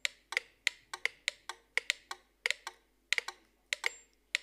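Several mechanical pendulum metronomes ticking out of step with one another, giving an uneven run of sharp clicks, about five a second.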